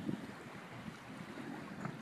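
Faint wind on the microphone and water noise from a small boat on choppy open water.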